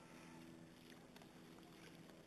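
Near silence, with a faint steady low hum in the background.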